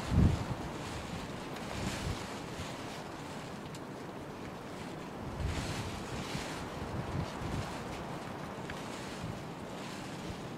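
Wind buffeting the microphone: a steady rushing noise with low gusts, and a heavy thump just after the start.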